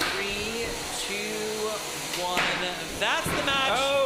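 Voices carrying on a countdown over the final seconds of a 3 lb combat robot fight, rising near the end, with a few sharp knocks from the robots hitting each other.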